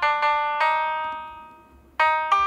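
Piano notes from the Perfect Piano app, played on a touchscreen keyboard: three notes struck in quick succession in the first half-second or so, then left to ring and die away, fading almost to nothing near the end.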